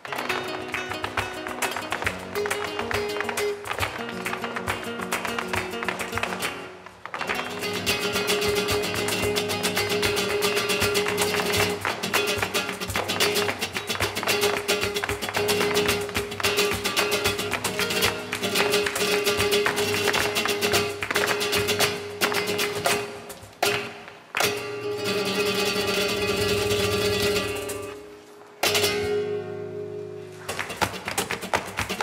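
Flamenco music played loud, with dense sharp percussive strikes over sustained pitched notes, broken by short pauses about 7, 24 and 28 seconds in.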